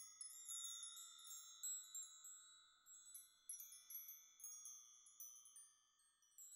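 Faint, high chime notes struck at irregular moments, each ringing on briefly and overlapping, thinning out towards the end. A deep final note cuts off right at the start.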